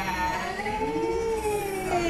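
A person's voice in one long, drawn-out cry of greeting, its pitch rising a little and then falling away.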